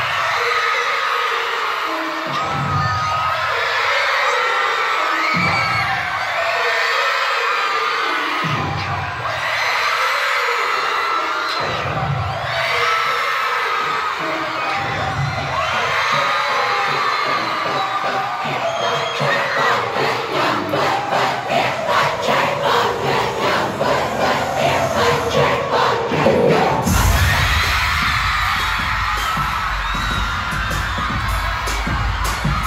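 A large arena crowd of fans screaming and cheering, with deep booms from the sound system about every three seconds. About two-thirds of the way through, a fast pulsing beat builds, and near the end the music comes in with heavy bass.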